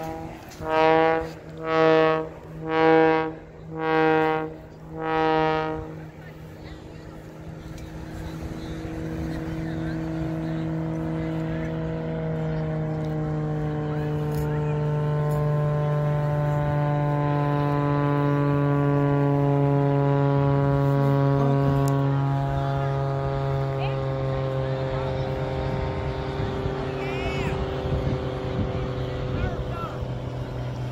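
Five short blasts of a deep horn about a second apart. Then an airplane's engine drone swells as the plane flies overhead and slowly falls in pitch as it passes.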